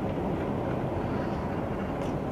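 Steady low road and engine noise of a car driving on a motorway, heard from inside the cabin.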